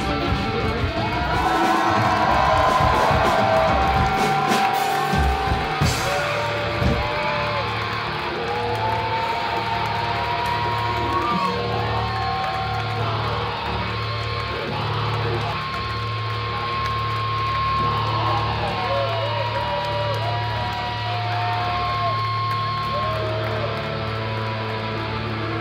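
Live rock band playing through a club PA: drums and electric guitar for the first six or seven seconds, then a pulsing bass line carries on under long, bending electric-guitar notes.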